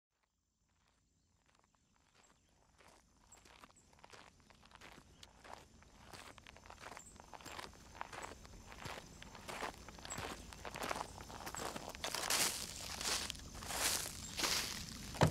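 Footsteps, about two a second, fading in from silence and growing steadily louder, each step a short crunch. A faint high steady tone runs beneath.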